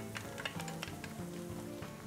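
Faint sizzling of diced onion, bell peppers and garlic frying in hot olive oil in a nonstick fry pan, under quiet background music with held notes.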